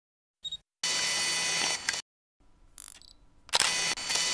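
Camera sound effects: a short high electronic beep, then about a second of steady mechanical whirring like a lens motor, and a loud, sharp-onset shutter-like burst near the end.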